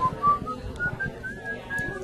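A person whistling a tune: short clear notes that step up and down in pitch, a few a second, with scattered low knocks underneath.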